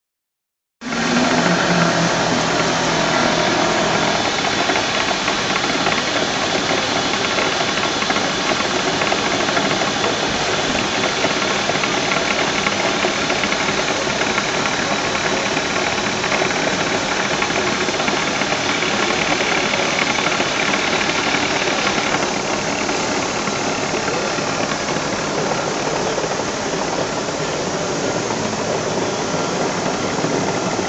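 Print-finishing machinery running: a steady, dense mechanical noise of paper-handling machines at work, with no pause. The tone changes a little about 22 seconds in.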